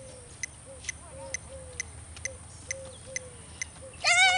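Metronome ticking steadily at about two clicks a second (roughly 130 beats per minute), keeping the pace for the dog's heeling.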